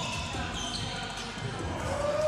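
Indoor pickup basketball game on a hardwood court: a ball bouncing, with short high squeaks of sneakers on the floor.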